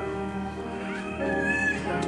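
Church organ and piano playing hymn music in held chords, with a higher wavering line that rises and falls in the second half.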